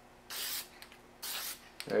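Aerosol can of purple spray paint hissing in two short bursts of about half a second each, as a marking line is sprayed across a bundle of steel rebar stakes.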